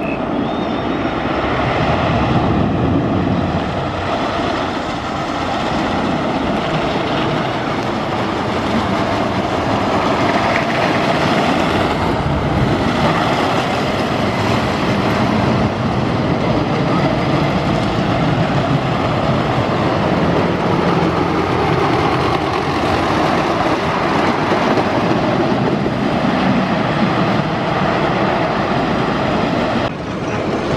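Wooden roller coaster train rumbling and roaring along its track, building over the first couple of seconds and running on loudly.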